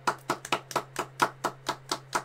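Hand clapping from two people: a steady run of sharp claps, about five a second.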